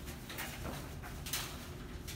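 Fitted sheet rustling as it is handled and turned over, with a few short fabric swishes, the strongest a little past halfway.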